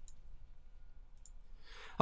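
Faint, quiet room tone with a few small clicks near the start and about a second in, then a soft intake of breath near the end.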